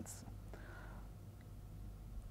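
Faint room tone with a steady low hum from the recording, in a pause between spoken sentences.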